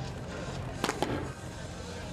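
Two sharp smacks of a rubber ball in play, about a fifth of a second apart, as it is struck with a racquet and hits the wall, over a steady low hum.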